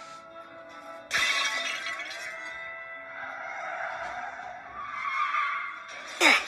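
A pane of window glass cracking with a sudden crash about a second in, over orchestral film score that carries on with sustained chords afterwards.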